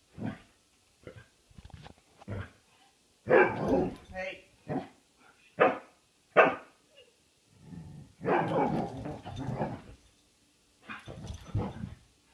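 Brittany spaniel barking in play: several short, sharp barks in the middle, then a longer stretch of rough growling noise.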